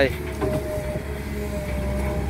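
Kobelco SK07 long-reach excavator running steadily as its arm moves the bucket of dirt: a low diesel engine hum with a thin steady whine from about half a second in.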